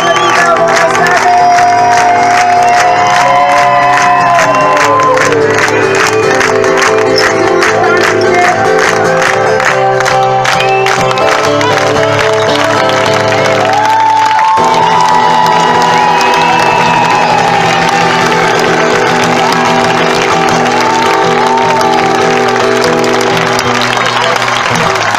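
Live music from an outdoor stage, a steady song with a pitched melody line over sustained chords, with the audience clapping along to the beat.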